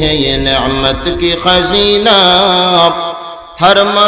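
A man singing a devotional song in Urdu through a microphone, drawing out long wavering notes. About three seconds in he breaks briefly for breath, then sings on.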